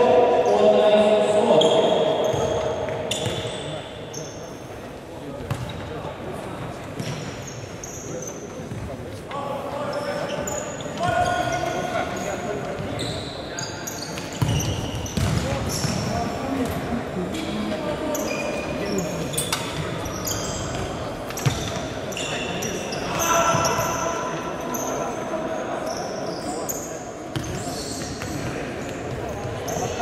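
Futsal match play in an echoing sports hall: the ball thudding off players' feet and the wooden floor, with shoe squeaks on the court and players shouting, loudest in the first couple of seconds.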